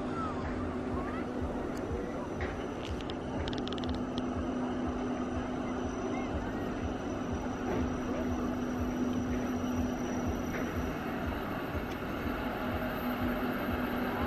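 Matterhorn Gotthard Bahn electric regional train running along the line: a steady hum over a constant rushing, rumbling noise, with faint distant voices.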